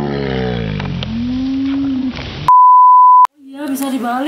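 A low, drawn-out call that falls in pitch and then holds steady over a hiss of surf. It is followed about two and a half seconds in by a loud, pure electronic beep that lasts under a second and cuts off abruptly.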